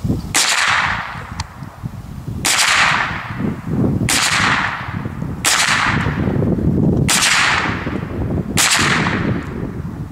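AR-15-type semi-automatic rifle fired as six single shots at an unhurried pace, about one and a half to two seconds apart, each shot trailing off in an echo over about a second.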